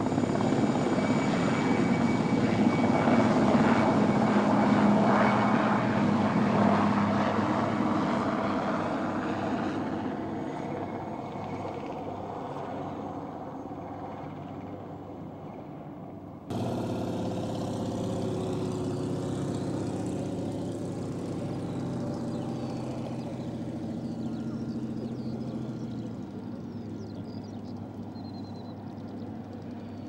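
Aircraft engines during a departure. The engine noise swells to a peak about four seconds in and then fades as the aircraft draws away. About halfway through the sound cuts abruptly to another steady engine hum that slowly fades.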